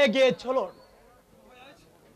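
A man speaking in Bengali in an expressive, stage-acting voice that breaks off about half a second in, followed by a near-silent pause.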